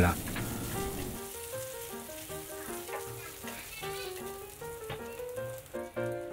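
Minced garlic and dried chilli frying in oil in a stainless steel pan over low heat, giving a light steady sizzle. Soft background music of short melodic notes plays over it.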